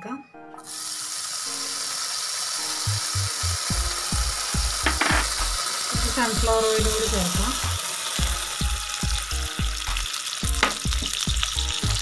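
Chopped pieces sizzling as they fry in hot oil in a non-stick pan, a steady hiss that starts suddenly about half a second in. From about three seconds in, low knocks from stirring come through the hiss.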